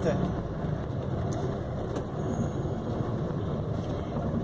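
Steady road and engine noise from inside a moving car in slow traffic, a low hum under an even rush of tyre and wind noise.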